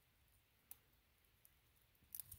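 Near silence, with one faint sharp click a little after half a second in and a fainter tick near the end.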